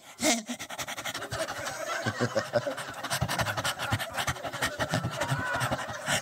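A person making rapid, breathy panting sounds without words for several seconds.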